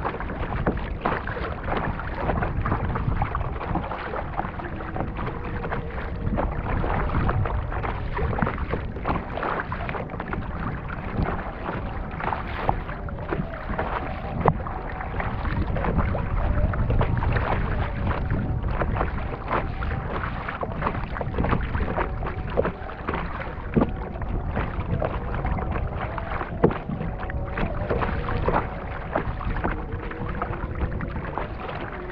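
Lagoon water splashing and lapping against the bow of a plastic kayak as it is paddled along, with irregular splashes from the paddle blades dipping in.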